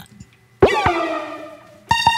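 Synthesizer notes from the Akai MPC X's TubeSynth plugin as a new sound is tried. About half a second in, a sudden note swoops down in pitch and then fades. Near the end, a brighter note starts and holds steady.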